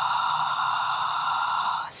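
A woman's long, steady, audible exhale in diaphragmatic breathing, the belly being drawn in as she breathes out. It stops just before the end.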